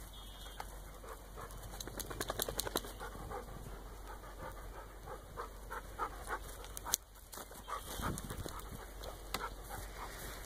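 Goats running about on soft, muddy pasture: scattered hoof thuds and rustling, with a quick run of taps about two to three seconds in and a sharp click near the seventh second.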